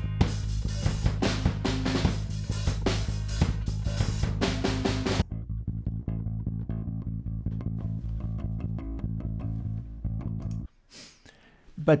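Playback of a thumb-played direct-input bass guitar line run through the Airwindows MidAmp amp-sim plugin for a heavier, amp-like tone, over a hard-hitting drum track. The drums drop out about five seconds in, leaving the bass alone until it stops shortly before the end.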